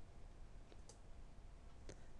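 Near silence: room tone with a couple of faint clicks, one about a second in and one near the end.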